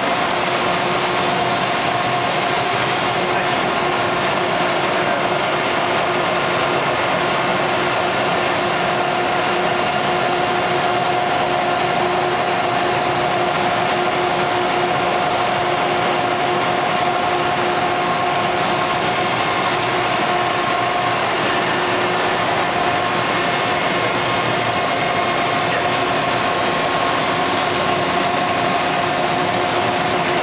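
Steady hum of industrial machinery on a machine shop floor, with a constant mid-pitched whine over an even noise.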